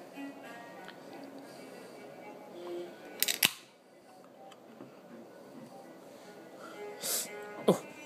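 A beer can's pull tab snapped open, a single sharp crack with a short fizz about three seconds in, over faint background music.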